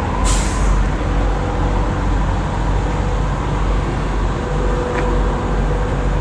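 Diesel semi truck idling with a steady low rumble. About a third of a second in comes a short, sharp hiss of air from the truck's air brakes, fading within half a second.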